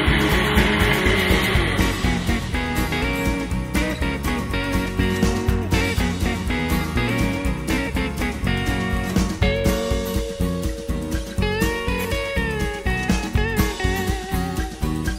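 Background instrumental music with a steady beat and plucked guitar notes.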